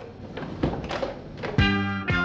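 A portable radio-cassette player being handled and switched on, with a few clicks and knocks, then music starting loudly and suddenly about one and a half seconds in.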